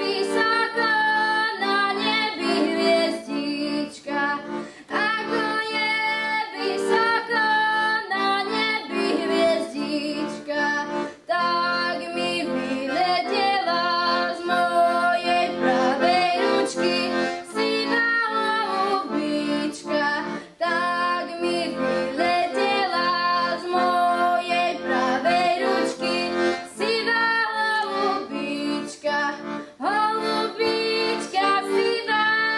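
A girl singing a Slovak folk song solo, accompanied by a piano accordion holding sustained chords beneath her melody, with brief pauses between phrases.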